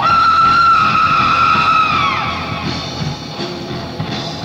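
A rock band playing live, in a lo-fi concert recording. A long high note starts suddenly, holds for about two seconds, then bends downward and fades while the band plays on underneath.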